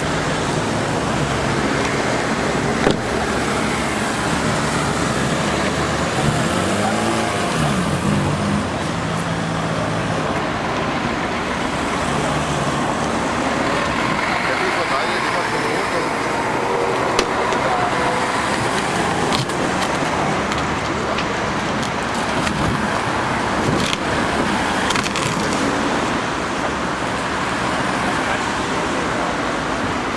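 Steady road traffic noise with a background murmur of crowd voices, broken by a few sharp knocks.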